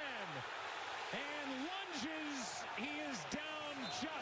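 Television broadcast commentary: a play-by-play announcer's voice over steady stadium crowd noise.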